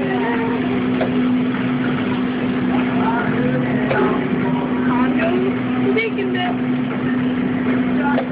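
Steady mechanical hum of restaurant kitchen equipment, with indistinct voices talking over it in the middle of the stretch.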